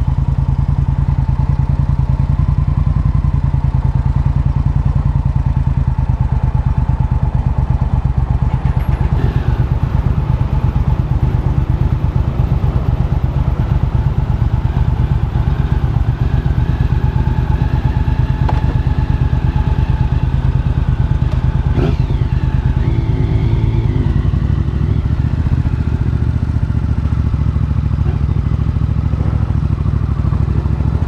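Motorcycle engine running with a steady low pulse, heard close up from a handlebar-mounted camera as the bike rides slowly out onto the road.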